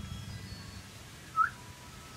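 Common hill myna giving one short whistled note about one and a half seconds in, sweeping quickly upward in pitch.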